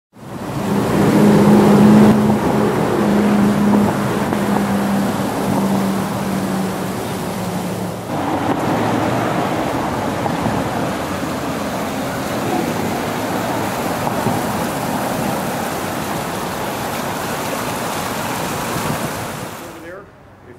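Water running in a stone-basin fountain, a loud steady rush. A low steady hum lies under it for the first several seconds and fades out before the sound shifts slightly about eight seconds in.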